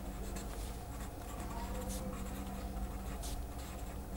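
A felt-tip marker writing on paper: faint, short scratching strokes as words are written out by hand, over a low steady hum.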